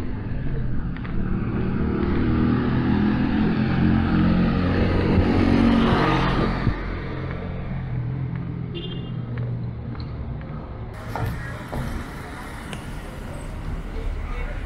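A car driving past, its engine and tyre noise swelling to a peak about six seconds in and then fading away. Later comes quieter street background with a few light knocks.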